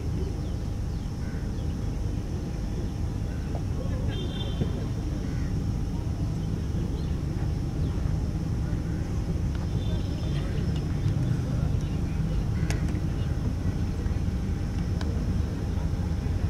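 Outdoor ambience with a steady low rumble, broken in the second half by two sharp knocks about two seconds apart: a cricket bat striking the ball in net practice.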